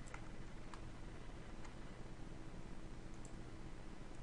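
A handful of faint, irregularly spaced computer mouse clicks over a steady background hiss and low hum.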